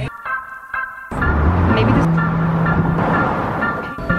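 Background music: a few soft notes, then a fuller pop backing with a bass line coming in about a second in.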